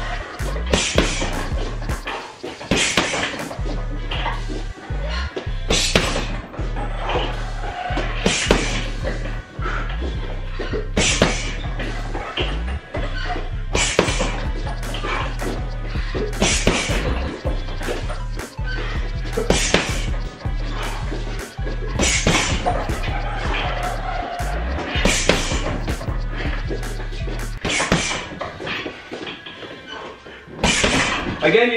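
Background music with a steady bass line, over gloved punches landing on a hanging uppercut heavy bag as irregular sharp smacks every second or two.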